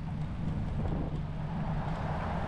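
Steady low rumble of wind buffeting the microphone and bicycle tyres rolling on an asphalt bike path while riding.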